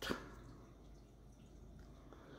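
A single short click right at the start as small plastic Lego minifigure parts are handled, then quiet room tone.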